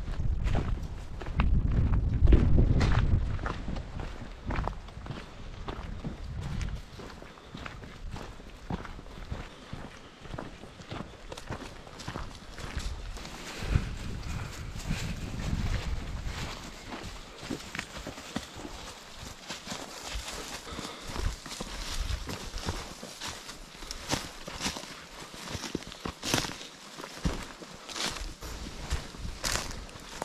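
Footsteps crunching through dry fallen leaves and brush on a forest floor, a string of short crisp crackles that grows denser in the second half. A heavy low rumble lies under the first few seconds and comes back briefly about halfway through.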